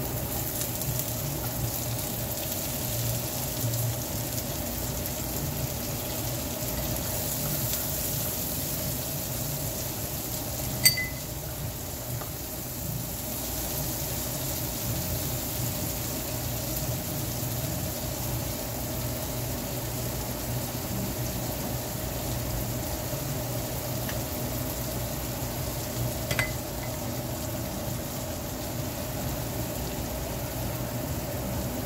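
Diced onion and garlic sizzling steadily as they fry in hot bacon fat in a skillet. Two sharp clicks break through, the louder one about eleven seconds in and another near the end.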